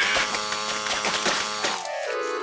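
Cartoon sound effect of an electric buzz with crackles, as a cockroach caught in a live cord gets a shock. The buzz stops just before the end.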